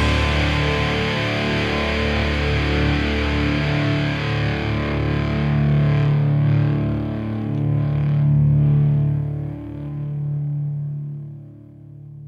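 Distorted electric guitar ringing out after the band stops at the end of a hardcore song: a few long held notes that change every couple of seconds, then fade away near the end.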